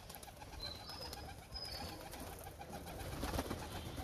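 Domestic pigeons cooing softly, with a brief knock about three seconds in.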